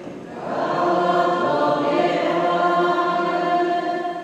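A church congregation singing a short liturgical response together, the voices starting about half a second in, holding for about three seconds and fading near the end.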